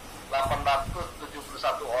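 A man's voice speaking in two short phrases, reading out figures, heard through a computer's loudspeaker.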